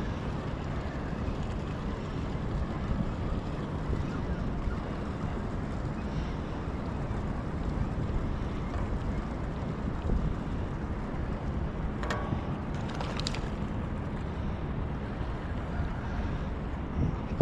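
Steady wind buffeting the microphone, with a short run of sharp clicks about twelve seconds in.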